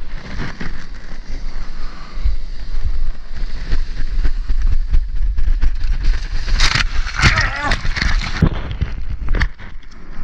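Wind rumbling on a mouth-mounted GoPro, and shorebreak whitewater splashing against a surfboard and the surfer's body as he wades in and starts paddling. The splashing is loudest in the second half.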